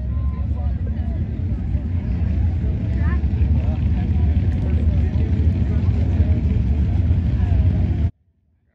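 Engines of vintage drag cars idling at the starting line, a deep, steady rumble that slowly grows louder, with people's voices faint in the background.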